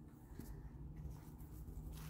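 Quiet background: a faint steady low hum over soft low rumble, with no distinct event.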